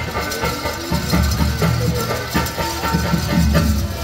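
Live theatre accompaniment played through a PA: a harmonium over a steady hand-drum beat.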